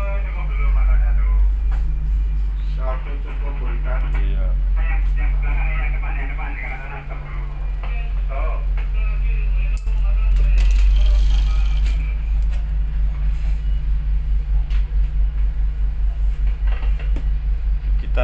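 Tugboat's diesel engines running with a steady low drone, heard on board, with indistinct voices over it. Near the end the rumble pulses fast, about five beats a second.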